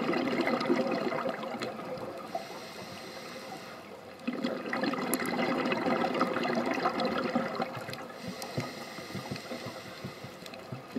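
Scuba diver's exhaled bubbles rushing out of the regulator, heard underwater, in two bursts: one fading out about two seconds in, and another from about four to seven and a half seconds, with quieter water noise between them.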